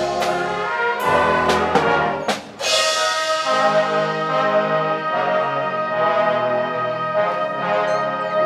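Concert band of brass and woodwinds playing, with sharp accented strokes in the first couple of seconds, a brief break about two and a half seconds in, then a loud entry into held brass chords.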